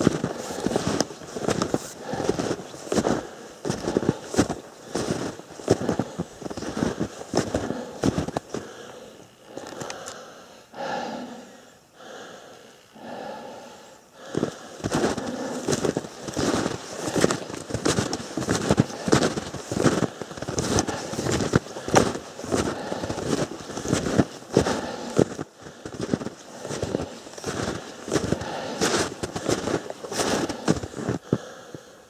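Snowshoe footsteps crunching in snow at a steady walking pace, one crunch after another, easing off for a few seconds about ten seconds in before picking up again.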